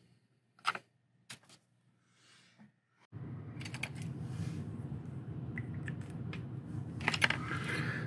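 A few faint light clicks from handling a bare diecast metal car chassis. From about three seconds in, a steady low background hum takes over.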